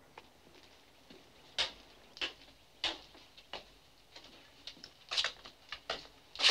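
Footsteps of a woman walking in riding boots at a steady walking pace: four single steps about two-thirds of a second apart, then a quicker cluster of sharper knocks near the end.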